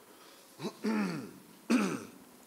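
A man clearing his throat in three short vocal bursts, the middle one longest with a falling pitch.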